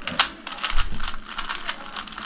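A Rubik's cube being turned quickly by hand: a rapid, irregular run of plastic clicks and clacks as its layers twist.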